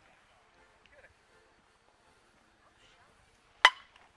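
A softball bat hitting a slowpitch softball once, a single sharp crack with a short ring near the end, as the batter lines the pitch into the outfield for a base hit.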